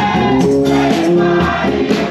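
Live gospel music: a choir singing held notes over a band of drum kit, congas, keyboard and bass guitar, with drum and cymbal hits keeping a steady beat.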